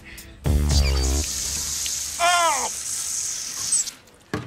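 Water running hard from a kitchen faucet, a steady hiss. A deep falling tone sounds loudest near the start, and a short high cry comes about two seconds in.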